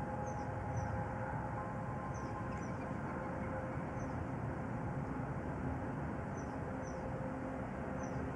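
Outdoor background ambience: a steady low rumble with a few faint held tones, and brief faint high chirps every second or so.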